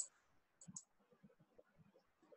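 Near silence with two faint clicks about two-thirds of a second in, from a computer mouse.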